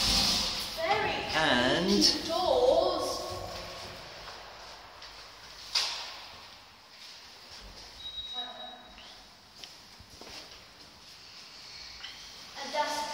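Lift car doors sliding open, then a single sharp click about six seconds in and a brief high beep about two seconds later, in a quiet lift lobby.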